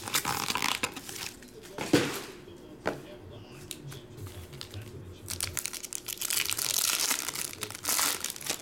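Foil trading-card pack wrappers crinkling as they are handled, with two sharp knocks in the middle. The crinkling grows dense near the end as a foil pack is pulled open.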